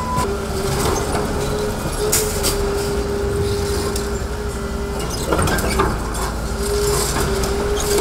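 Hydraulic demolition excavator working its crusher jaw on a concrete wall: the engine and hydraulics run with a steady whine and low rumble, while concrete cracks and rubble falls in sharp crunches, the loudest a little past halfway.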